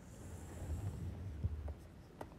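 Faint scratching of a stylus drawing an underline stroke on a pen tablet.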